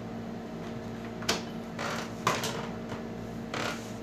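Hands working on the plastic back cover of an LED TV, giving a handful of short, sharp clicks and knocks, over a steady background hum.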